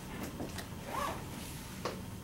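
Dry-erase marker writing on a whiteboard: a few short scratchy strokes, with a brief squeak about halfway through and a sharp stroke near the end.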